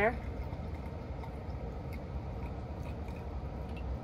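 Bleach poured from a paper cup trickling faintly into an HVAC condensate drain tube, over a steady low background hum.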